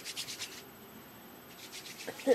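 Hands rubbing together, working in alcohol hand sanitizer gel: quick repeated swishes, once at the start and again near the end.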